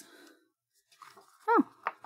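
Mostly quiet handling sounds: a faint rustle of paper sheets being lifted off a cutting mat, then a short spoken 'oh' about a second and a half in, and a small click near the end.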